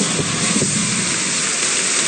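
Audience applauding, a dense, steady clatter of many hands clapping.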